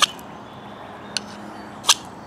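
Three short scrapes of a ferrocerium rod struck against the spine of a Helle Temagami knife: one at the start, one just past a second in and one near the end. The owner's verdict is that this spine won't work a ferro rod.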